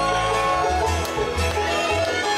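Live bluegrass band playing: fiddle, banjo and acoustic guitars over a walking upright bass.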